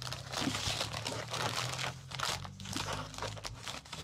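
Paper postage stamps and paper scraps rummaged through by hand in a clear plastic storage box: continuous crinkling and rustling of paper with many small crackles and taps.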